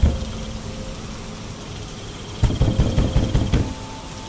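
Pounding on a door: a burst of rapid, heavy thuds about two and a half seconds in, lasting about a second. Under it, crickets chirp steadily.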